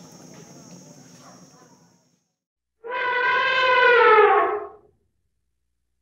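Outdoor ambience with a steady high insect drone and light rustling, cut off about two seconds in. After a short silence comes a single loud elephant trumpet call, about two seconds long and sagging slightly in pitch, clean and free of background noise.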